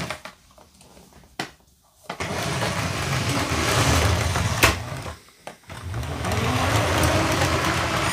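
Electric 9V motor of a LEGO 4561 Railway Express train whirring as the train runs around a circle of plastic track. Quiet for the first two seconds, then a steady whir that drops out briefly a little past halfway and comes back.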